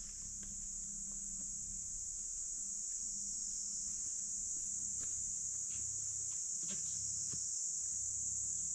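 Insects calling in a steady, unbroken high-pitched chorus.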